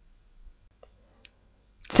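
Near silence with two or three faint, short clicks in the middle of the pause.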